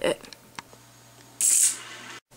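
Homemade Gauss cannon of steel balls and magnets on a wooden track being fired: a few faint clicks of the balls striking, then, about a second and a half in, a loud, brief, hissing clatter.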